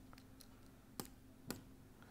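Two sharp clicks of a computer mouse, about half a second apart, advancing the lecture slides, against near silence.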